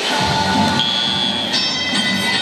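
Music and held chord-like tones played over the arena's public-address system, which comes in about a second in and thickens near the end, over crowd noise in a large gym.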